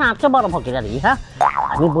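Voices over background music, with a comic sound effect: a quick rising glide about a second and a half in.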